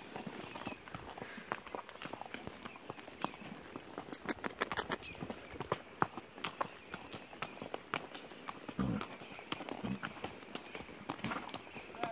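Hooves of a ridden horse on a stony dirt trail: an irregular run of clicks and knocks as the hooves strike stones and ground. There is a quick series of sharp clicks about four seconds in, and a couple of dull thumps around nine seconds.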